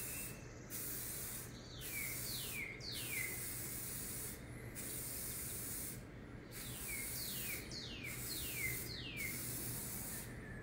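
Krylon paint-and-primer aerosol spray can hissing as it applies a first coat of paint, in repeated bursts of one to two seconds with short breaks between.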